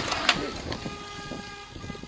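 A sharp thump just after the start as a car hits a deer and knocks it through the air, then a car horn sounds as one steady note for about a second, over road and wind noise.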